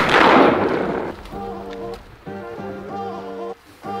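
A loud blast that fades away over about a second, then background music with a repeating melody.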